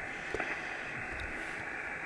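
Steady receiver hiss from the Kenwood TS-480HX transceiver's speaker on upper sideband, the noise cut off sharply at the top by the SSB filter, with a faint click or two.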